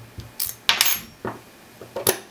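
Sharp metallic clicks and clinks from a Master Lock 40 mm radial padlock and its radial key being handled: one click about half a second in, a quick cluster of clicks just before a second in, and a softer click shortly after.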